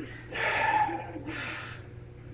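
A lifter breathing hard between reps of a heavy barbell back squat: two loud, forceful breaths about a second apart while standing at the top of the lift.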